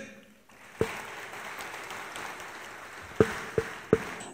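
Audience applauding, starting about half a second in and holding steady, with a few short sharper sounds standing out over it.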